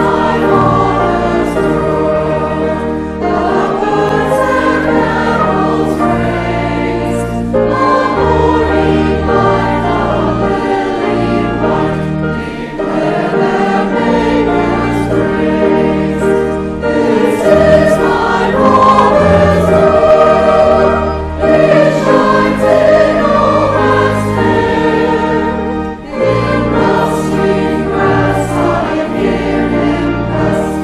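Mixed choir of men and women singing a sacred anthem in phrases, over sustained low pipe-organ accompaniment.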